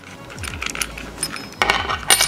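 Small metal parts clicking and clinking as a threaded piece of a floor lamp's bulb-socket fitting is unscrewed and handled by hand, with a denser run of clinks near the end.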